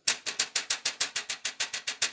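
Metal mesh insert of a PC case front panel rattling in its plastic frame as a finger taps it, a fast, even run of clicks at about seven a second. The mesh, pressed back in by hand, no longer sits factory-tight and rattles, though not enough for the case fans to make it vibrate.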